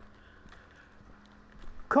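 Faint footsteps of a person walking on pavement, with a steady faint hum underneath. A man's voice starts near the end.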